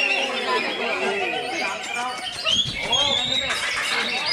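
A greater green leafbird (cucak ijo) singing a varied, chattering contest song. It is mixed into a dense chorus of other caged birds and voices shouting, so that many calls overlap throughout.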